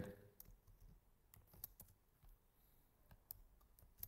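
A handful of faint, irregular clicks from a computer mouse and keyboard while text on a form is highlighted, copied and deleted.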